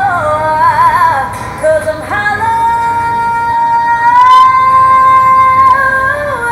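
Recorded pop song: a woman singing over backing music, with quick vocal runs, then one long held note from about two seconds in.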